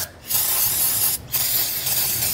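Aerosol can of brake cleaner spraying a greasy castle nut and washer, in two hissing bursts with a short break about a second in.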